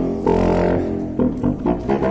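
Unaccompanied contrabassoon playing in its low register: one held note, then, from about a second in, a run of short, detached notes.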